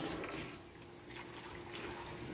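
Insects chirping outdoors: a steady, high-pitched, rapidly pulsing drone, with a faint low hum underneath.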